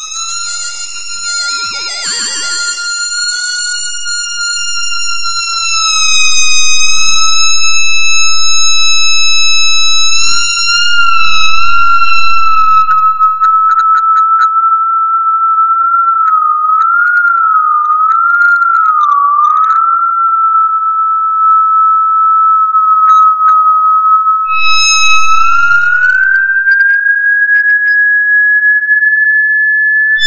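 Electronic sine-wave tone held at a high steady pitch, loud and continuous. At first it carries a bright stack of overtones that fade away, leaving an almost pure tone. Its pitch wavers a few times around the middle and glides upward near the end.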